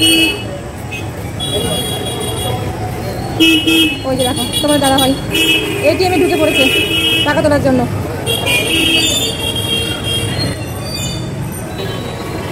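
Street traffic with vehicle horns honking again and again, a series of toots each about a second long, over a steady rumble of engines.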